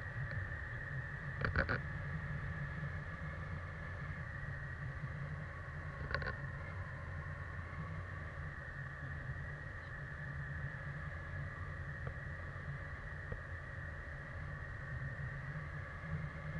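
Steady wind rush and rumble on a handheld action camera's microphone during a tandem paraglider flight, with a couple of short clicks from handling the camera pole.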